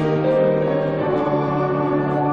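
A congregation singing a hymn, holding long notes.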